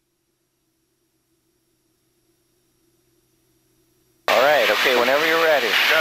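Near silence with only a faint low hum for about four seconds, then a man starts speaking, with a steady hiss behind his voice.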